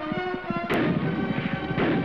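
Two gunshots about a second apart, each ringing off in a short echo, over background film music.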